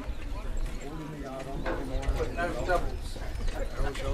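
Hoofbeats of harness horses trotting on grass as they pass pulling sulkies, with people talking in the background.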